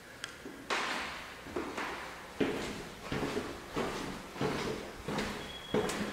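Footsteps on a bare hardwood floor in an empty room: about eight steps at an even walking pace, each fading with a short echo.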